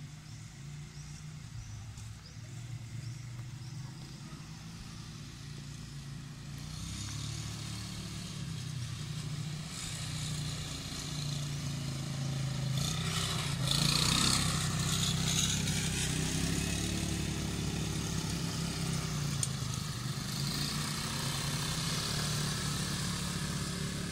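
Small ATV (quad bike) engines running, growing louder as one passes close by about halfway through, with its pitch sweeping as it goes past.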